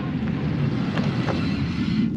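Steady wind noise on the microphone, a low even rush with no distinct events.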